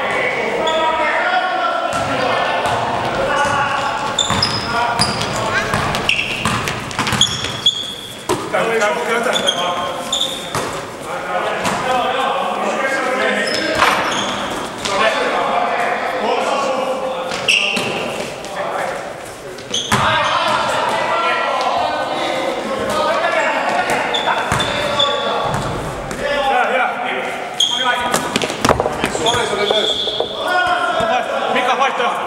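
Indoor basketball game: the ball bouncing on the sports-hall floor, with players' shouts and talk and short high shoe squeaks, all echoing in the large hall.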